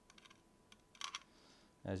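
Light clicks and ticks of small metal mounting screws being threaded by hand into the side of a 2.5-inch SSD, with a short cluster of sharper clicks about a second in.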